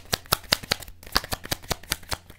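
A deck of divination cards being shuffled by hand: a quick, even run of crisp card flicks, several a second.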